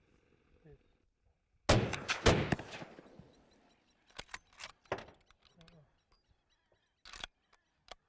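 Two rifle shots fired at a hippo in the water, about half a second apart, nearly two seconds in, each report trailing off over about a second; both shots struck home. Smaller sharp knocks and clicks follow a couple of seconds later.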